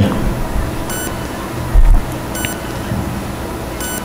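Steady room noise with three short, faint electronic beeps about a second and a half apart, and one brief low thump a little before the two-second mark.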